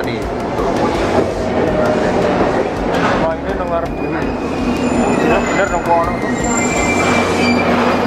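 JR Kyushu commuter train running in alongside the platform and slowing to a stop, with a steady low hum and, in the second half, high steady whining tones. Voices can be heard around it.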